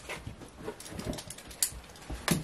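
Faint handling noise, light rustling and small irregular clicks, as hands work a bare electrical wire hanging from the ceiling, with one sharper click about one and a half seconds in.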